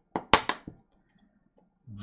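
A quick run of sharp plastic taps and clicks, about a third of a second in and lasting around half a second, from a clear acrylic stamp block and a dye ink pad being handled and set down on the craft mat.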